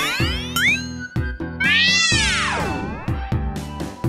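Cartoon sound effects over bouncy children's background music with a steady beat: quick rising swoops near the start, then a long swoop in the middle that rises and falls in pitch.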